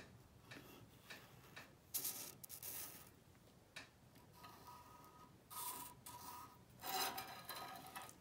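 A marker tip drawn along a steel ruler across the aluminium gasket face of an Edelbrock Super Victor intake manifold: a few faint scratchy rubbing strokes, one with a brief thin squeak near the middle.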